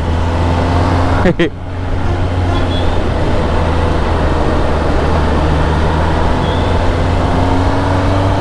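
Kawasaki Ninja ZX-10R's inline-four engine running steadily on its stock exhaust as the bike gathers speed. There is a brief dip in the sound about a second and a half in.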